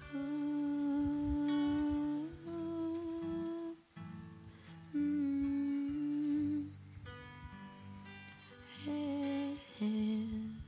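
A woman humming slow, long-held notes in about four phrases over a softly played acoustic guitar.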